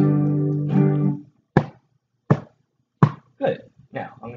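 An acoustic guitar chord is strummed and rings, struck again a moment later, and dies away about a second in. Then a hand drum is hit three times, evenly about two-thirds of a second apart, answering a count of three.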